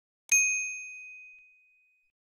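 A single bright bell ding, a notification-chime sound effect for the bell icon being clicked. It sounds about a third of a second in and rings out, fading away over about a second and a half.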